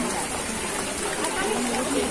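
Steady outdoor hiss with faint voices of people talking in the background.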